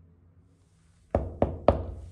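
Three quick knuckle knocks on a door, starting about a second in and spaced about a quarter second apart.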